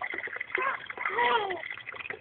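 Water running from a wall tap and splattering over a small child's hand and the wall, in irregular little splashes. A voice comes in briefly about a second in.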